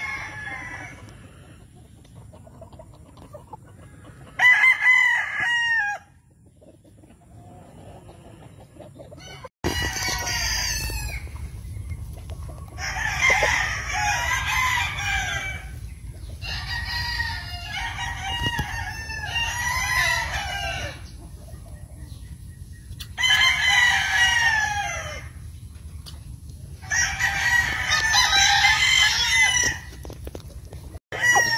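Gamecocks crowing over and over, about eight crows of a second or two each, some from different birds overlapping. A steady low rumble runs underneath from about ten seconds in.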